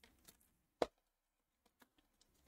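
A few short, light clicks and taps against a quiet room, the loudest about a second in.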